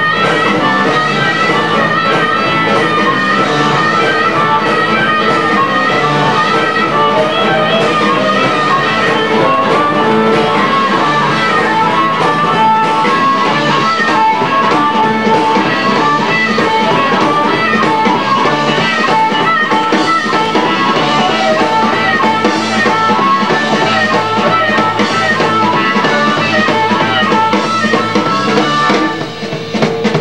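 Live blues band playing an instrumental passage, guitar over a drum kit, without vocals; the music dips briefly just before the end.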